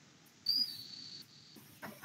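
A short, thin, high-pitched squeak starts about half a second in, falls slightly in pitch and fades away over about a second, against a quiet room.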